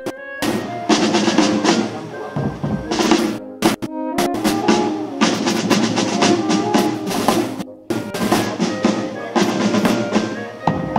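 Marching band playing: snare drums rolling and a bass drum beating, with a melody over them. The sound breaks off briefly about four and eight seconds in.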